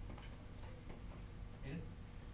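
Quiet classroom room tone during a pause, with a few faint light clicks in the first second and a brief low murmur of a voice near the end.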